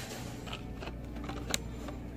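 Light clicks and crinkles of a cardboard-and-plastic blister-packed toy car being handled, the sharpest click about one and a half seconds in, over a steady low hum.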